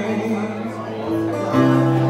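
Acoustic guitar playing a slow song, with a new chord struck about one and a half seconds in.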